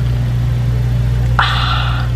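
A steady low electrical-sounding hum. A short breathy hiss comes near the end, just before speech resumes.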